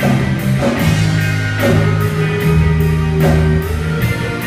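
Live rock band playing an instrumental passage: electric guitars and bass holding sustained chords that change about once a second, over a steady drum beat.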